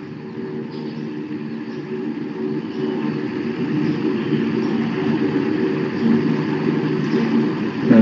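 A steady mechanical hum with several held low tones over a hiss, like a running motor or engine, gradually getting a little louder.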